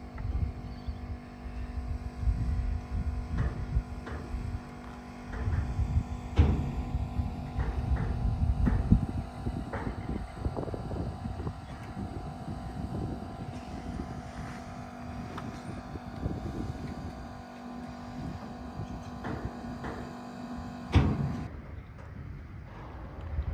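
A steady engine drone with a few sharp knocks, the loudest about six seconds in and again near the end. Wind rumbles on the microphone in uneven gusts throughout.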